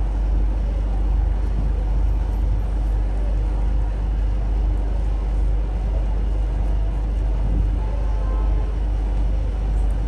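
Steady low rumble with an even hiss over it, unbroken and without distinct events, like a machine or engine running in the background.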